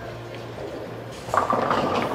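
Bowling centre background noise: a steady low hum, with a louder noisy rush coming in about two-thirds of the way through.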